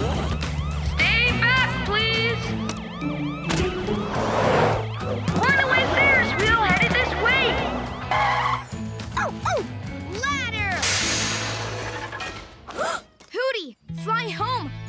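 Cartoon police siren sounding in quick rising-and-falling sweeps over a steady music bed, with two rushing noise swells about four and eleven seconds in.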